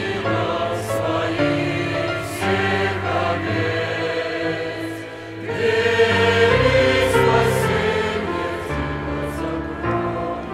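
Mixed choir of men's and women's voices singing a hymn in parts, in held chords. About five seconds in the singing briefly drops back, then swells to its loudest.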